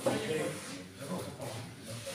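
People talking indistinctly in the background, in broken snatches of conversation.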